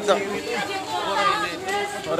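Several people talking, their voices overlapping in excited chatter.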